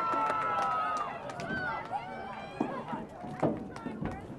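Voices shouting and calling across an outdoor field hockey pitch during play: a long drawn-out call over the first second, then scattered shorter shouts, with a few sharp knocks among them.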